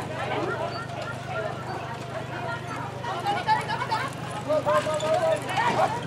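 Hoofbeats of a pair of carriage horses moving through a driving obstacle on turf, under people talking, with the voices louder near the end. A steady low hum runs underneath.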